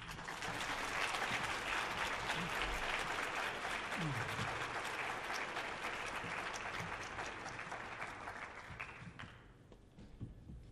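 Concert hall audience applauding, the clapping rising at once to full strength and dying away over the last couple of seconds.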